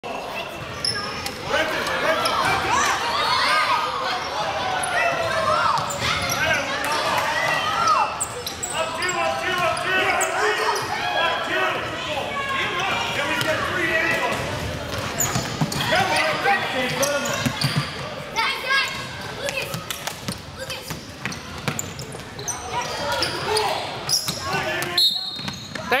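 Basketballs bouncing on a hardwood gym floor amid many overlapping voices of players and spectators, echoing in a large gymnasium.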